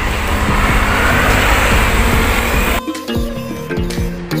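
Loud, steady vehicle noise with a low rumble, with background music under it. About three seconds in it cuts off suddenly, leaving background music with plucked, guitar-like notes.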